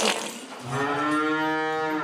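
A cow in labour gives one long, low, steady moo, starting under a second in, during an assisted calving with the calf lying crosswise.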